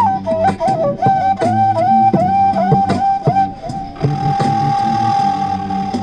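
Wooden transverse flute playing a melody of short, repeated notes, then holding one long steady note from about four seconds in. Underneath it runs a low sustained backing with a regular clicking beat.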